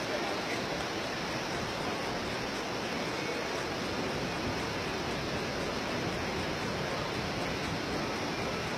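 Steady rushing of a fast whitewater river far below, an even noise with no distinct events.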